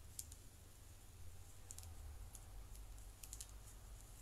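Near silence: a low steady hum with a few faint, scattered small clicks, some in quick pairs.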